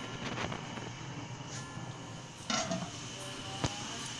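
Steady sizzling hiss of sliced onions frying in oil on a gas stove, with a few light clinks of utensils and one sharp tap near the end.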